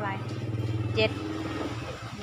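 Engine of a passing motor vehicle: a low drone that swells about half a second in and eases near the end, under a woman's speech.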